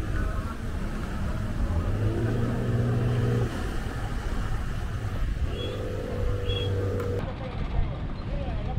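Outboard motor of a wooden fishing pirogue running steadily under way, a low hum that grows louder twice.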